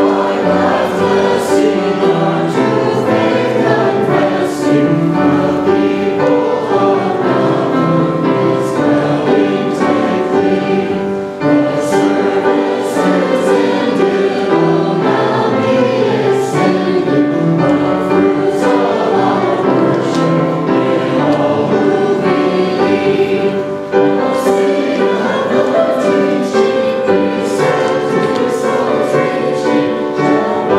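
Church choir singing a hymn with piano accompaniment, in held, sustained lines, with short breaks between phrases about 11 and 24 seconds in.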